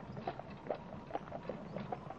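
Horse hooves clip-clopping at a steady pace, about four to five hoof-falls a second, fairly faint, as a horse-drawn cart moves along.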